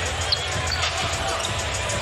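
A basketball dribbled repeatedly on a hardwood court, with short bounces over a steady background of arena noise.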